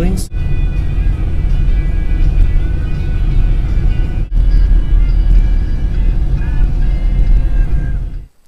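Car cabin road noise while driving, a loud steady low rumble, with music playing over it. The sound breaks off briefly twice.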